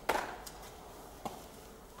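Feet landing on a concrete floor after dropping from a hanging bar: one sharp thud at the start that echoes briefly off the bare concrete, then a faint tap about a second later.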